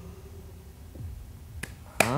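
A single sharp click about a second and a half in, over a faint low hum that fades out early.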